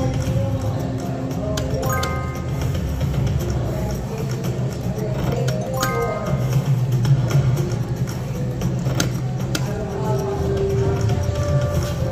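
Wolf Run Eclipse video slot machine playing its electronic spin sounds as the reels spin and stop: short bell-like chime tones a couple of times, with a few clicks, over a steady low background hum.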